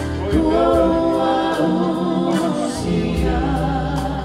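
A choir singing with instrumental backing: held chords over a bass line and a steady drum beat.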